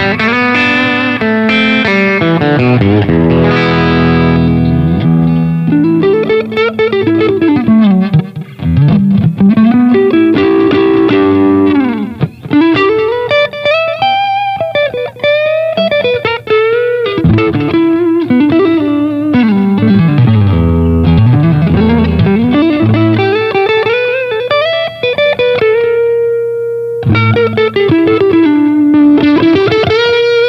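Vintage V62 Icon T-style electric guitar, plugged in and played: sustained chords in the first few seconds, then single-note lead lines with many string bends that slide notes up and down.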